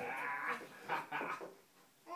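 A baby's short, high-pitched vocal sounds, several in quick succession, dying away near the end.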